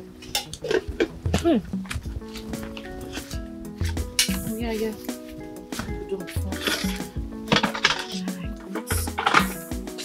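Clinks and clatter of metal cooking pots and dishes being handled, over background film music of held notes.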